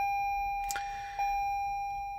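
2021 Toyota Highlander Hybrid's dashboard warning chime with the ignition on: a single tone struck twice, about a second apart, each strike fading away. A short click falls between the two.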